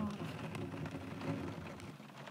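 Rain falling steadily in a thunderstorm, with a low rumble underneath that dies away near the end.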